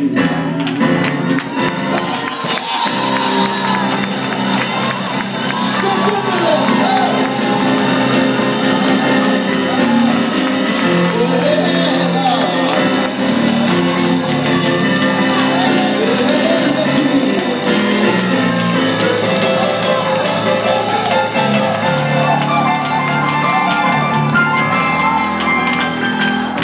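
Live gospel music, instruments holding steady chords, with several voices shouting and singing over it.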